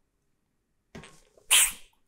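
A short, sharp, hissy breath from a man lifting a loaded trap bar off the floor, about one and a half seconds in.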